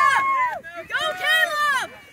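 High-pitched voices shouting and cheering in long, drawn-out calls that fall off at their ends; the cheers fade out near the end.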